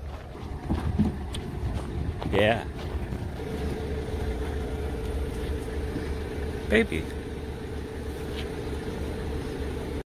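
Steady low rumble of machinery around a parked turboprop airliner on the apron, with wind on the microphone. A steady mid-pitched hum sets in about a third of the way in and holds, and two short voice sounds rise above it.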